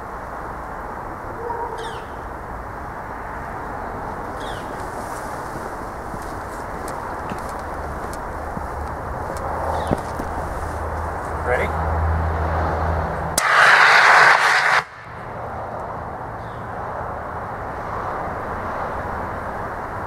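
CO2 cryo gun firing liquid CO2 from a high-pressure hose: one loud hiss of about a second and a half, a little past the middle, that cuts off suddenly. A steady low hiss of background noise is heard the rest of the time.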